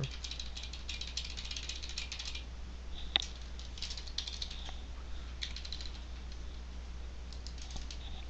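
Computer keyboard typing: a fast run of keystrokes for about two seconds, then a single louder click, then short runs of keystrokes, over a low steady hum.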